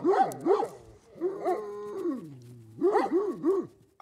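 Caucasian shepherd dogs barking: two barks at the start and three quick barks near the end, with a longer drawn-out call between them that falls in pitch.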